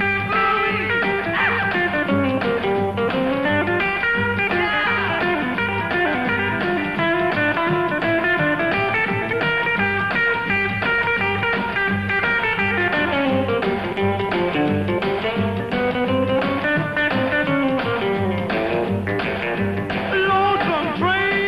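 Rockabilly instrumental break: an electric guitar plays the lead over a strummed acoustic rhythm guitar and an upright bass keeping a steady beat.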